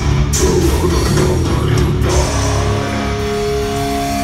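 Heavy metal band playing live and loud: pounding drums with cymbal crashes under distorted electric guitars. About halfway through, the drums stop and held guitar notes ring on.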